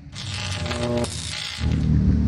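Digital glitch transition sound effect: a crackling, buzzing burst of noise with a brief electronic tone in the middle, lasting about a second and a half. After it, a low rumble takes over near the end.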